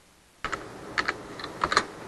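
Computer keyboard typing: a handful of quick, irregular keystrokes beginning about half a second in.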